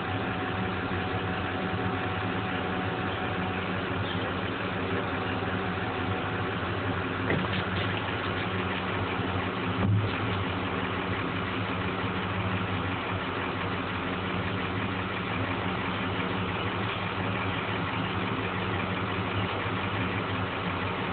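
An engine idling steadily with an even low hum, most likely the boat's motor.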